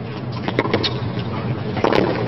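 Tennis rally on a hard court: a few sharp pops of racket strikes and ball bounces, the loudest near the end, over a steady background murmur.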